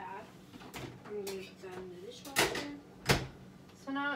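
Two sharp knocks about two-thirds of a second apart, the second the sharper, from things being handled at a kitchen counter. A voice is heard faintly before them.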